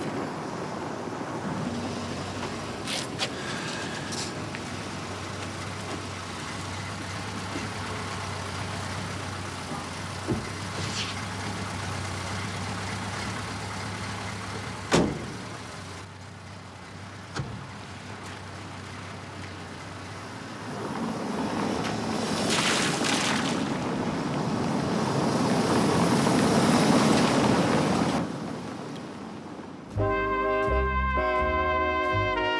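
Street background noise with a car passing: its engine and tyre noise builds over several seconds and then cuts off suddenly near the end. A few sharp knocks sound earlier, the loudest about halfway.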